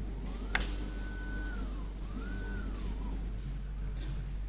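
Motorized camera carriage of a Flatmount flexo plate mounter moving to the mounting marks for a quality check: its drive motor whines up in pitch, holds steady, then winds down, twice in a row, over a steady low hum. A sharp click comes about half a second in.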